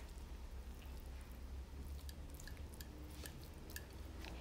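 Faint soft squishes and light clicks of cooked chicken shawarma and bell pepper strips being tipped from a frying pan and spread with metal tongs over a zucchini batter base, over a low steady hum.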